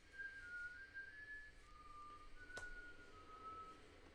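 A person whistling softly, a slow string of single held notes that step up and down in pitch. A brief click sounds about two and a half seconds in.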